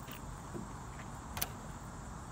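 Handling noise from the recording device as a hand reaches for it: a steady low rumble, with one sharp click about one and a half seconds in.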